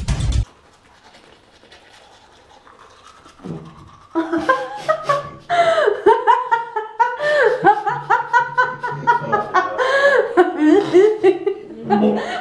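Music cuts off half a second in; after a few quiet seconds, a woman laughs hard and high-pitched in repeated peals.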